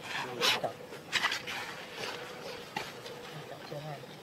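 Baby macaques calling with short, shrill squeals: two loud ones about half a second in and just after a second, then fainter calls.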